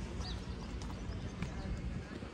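Footsteps on a paved footpath, a few sharp steps, over a steady low outdoor rumble.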